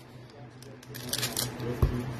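Foil wrapper of a Panini Legacy football card pack crinkling as it is handled, with a short soft thump near the end.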